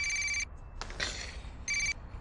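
Telephone ringing with an electronic ring tone: one burst ends just after the start and another comes near the end, each a fraction of a second long.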